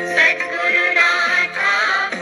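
A Marathi devotional song playing: a wavering, ornamented melody over steady accompaniment.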